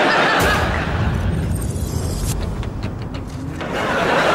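A studio audience laughing in a long, loud wave that eases off a little towards the end.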